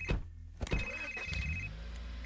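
Mobile phone ringing: one high electronic ring about a second long, starting about two-thirds of a second in, over a low steady hum.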